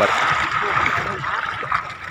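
Sea water sloshing and lapping against a bamboo raft: a steady watery wash, with faint voices in the background.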